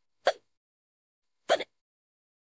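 A person hiccuping twice, two short sharp hiccups a little over a second apart during a bout of hiccups.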